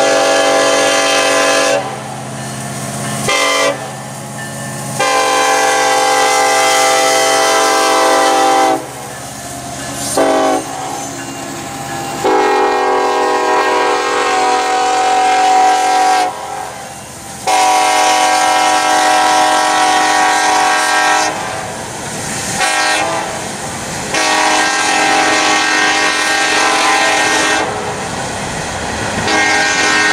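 Diesel locomotive air horns sounding a series of loud, several-note blasts, mostly long ones of a few seconds with a few short ones between, over the rumble of passing freight trains.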